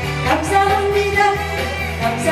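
A woman singing a Korean trot song into a microphone over backing music with a steady bass line and beat, holding a long note partway through.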